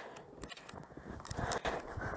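Footsteps trudging through deep snow, about a foot of it: soft, irregular crunches and rustles, with a light hiss building toward the end.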